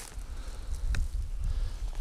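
Uneven low rumble of wind buffeting the microphone, with one short faint click about a second in.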